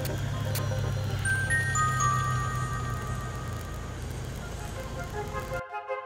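Background music: a low sustained drone with high held notes coming in one after another about a second in, changing to a thinner set of held tones near the end.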